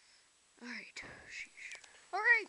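A person whispering softly, starting about half a second in, with breathy voice sounds and no clear words.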